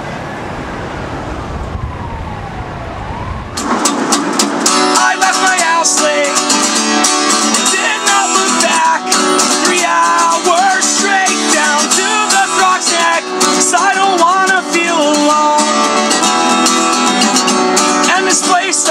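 A low rumbling noise with a falling then rising whine for the first few seconds, then an acoustic guitar starts strumming about four seconds in, with a man singing over it.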